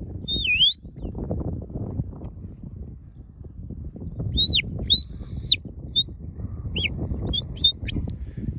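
Shepherd's whistle commands to a working sheepdog. A dipping-then-rising whistle comes about half a second in; from about four seconds there is a short rising-falling note, one long held note and a run of short pips. Wind rumbles on the microphone underneath.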